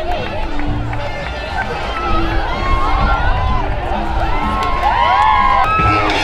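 A large crowd on a boardwalk, many voices chattering, shouting and cheering at once. Music cuts in suddenly just before the end.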